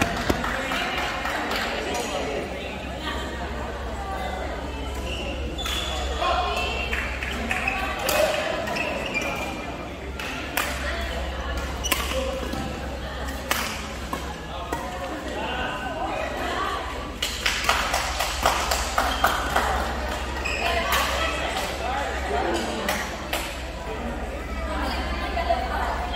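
Badminton rally: sharp cracks of rackets hitting the shuttlecock at irregular intervals, coming thick and fast for a few seconds past the middle, over a steady murmur of spectator chatter in the hall.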